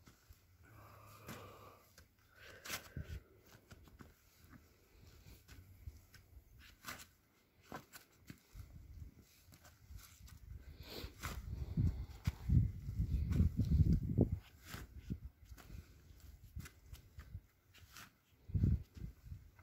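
A spade digging into clumpy garden soil: scattered scrapes and clicks of the blade, with a run of heavier low thuds for several seconds about halfway through as clods are cut and tossed onto the pile.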